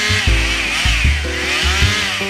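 A chainsaw running, its engine pitch wavering up and down, with background music under it.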